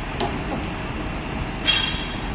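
Treadmill running with a steady rumbling noise, and a short beep from the console as its buttons are pressed near the end.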